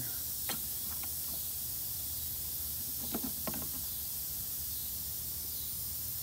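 Steady background hiss with a few light clicks and knocks from handling the plastic headlight housing, two near the start and a short cluster about halfway through.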